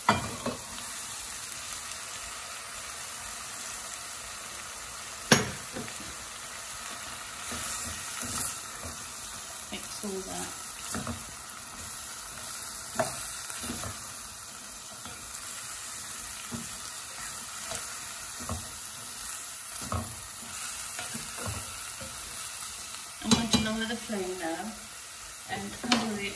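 Taro stolons (lota) sizzling as they fry in spiced onion paste in a stainless steel pot while being stirred with a spoon. A few sharp knocks of the spoon against the pot, the loudest about five seconds in.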